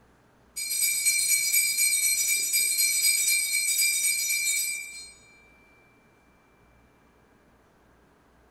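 Altar bells rung continuously for about four seconds, a bright jingling ring of many high tones, then stilled, with one tone fading away. They mark the elevation of the consecrated host at Mass.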